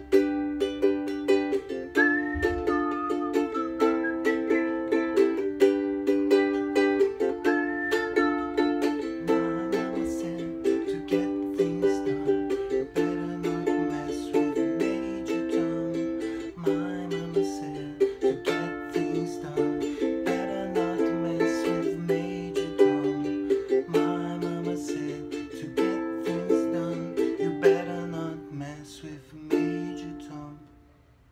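Ukulele strummed in steady chords, the chords changing every couple of seconds, until the playing stops at the very end.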